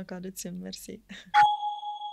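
A single bright chime struck once about 1.3 seconds in, ringing and fading away over about a second and a half: a transition sound effect leading into the show's title card. Speech comes before it.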